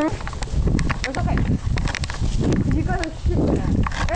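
Short wordless voice sounds, with scattered clicks over a low rumble.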